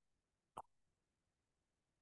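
Near silence, with one brief faint click about half a second in.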